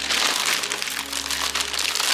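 Plastic bag of shredded cheese crinkling as cheese is shaken out of it, a dense run of small crackles.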